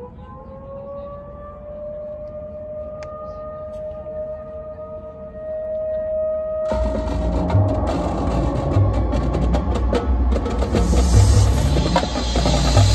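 Marching band music: a quiet, held tone slowly rises and swells for about seven seconds, then the full band and drumline come in loud.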